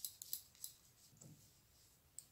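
Metal circular knitting needles clicking faintly against each other as stitches are knitted along a row: a few light, irregular clicks, mostly in the first second.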